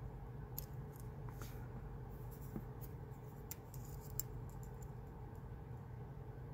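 Faint scraping and a few sharp, scattered metallic ticks of a pick working inside the keyway of a brass Abus EC75 dimple padlock.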